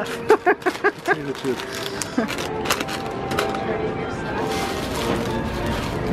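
Laughter about a second long, then paper wrapping crinkling and crackling in short scattered bursts as a corn dog is unwrapped by hand.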